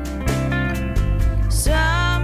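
Acoustic guitar and electric guitar playing a slow song together. Near the end, a woman's voice comes in, singing a long wavering note.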